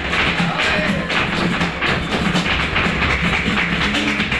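Flamenco music: a dancer's rapid heel-and-toe footwork (zapateado) striking the stage, with hand clapping (palmas) and flamenco guitar.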